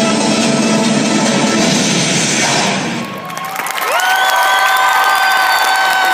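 Recorded performance music playing, then stopping about halfway through as crowd cheering and applause take over, topped by one long, high "woo" cheer held for about two seconds.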